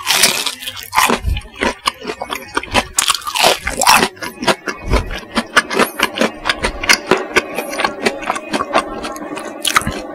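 Close-miked biting and chewing of crispy bubble-crumb coated chicken nuggets: loud crunches in the first second and again about three seconds in, then fast, crackly chewing.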